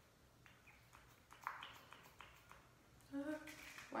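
Faint clicks of a fixing-spray bottle's pump pressed several times in a row, with little or no mist coming out: the nozzle is failing to spray.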